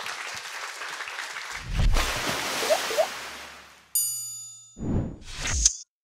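Audience applause that gives way about a second and a half in to an animated logo sting: a low whoosh, two short chirps, a bright ringing ding about four seconds in, then two quick whooshes near the end.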